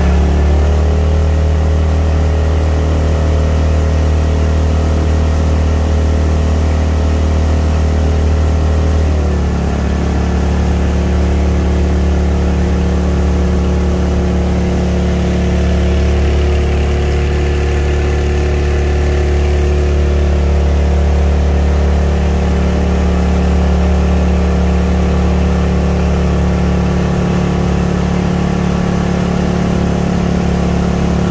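2011 Mokai motorized kayak's single-cylinder four-stroke engine running steadily under way, with a slight change in engine speed about nine seconds in.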